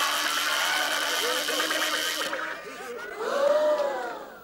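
Cartoon joy-buzzer sound effect from a film soundtrack, heard during a handshake: a loud electric buzz that cuts off about two seconds in. A short vocal cry follows near the end.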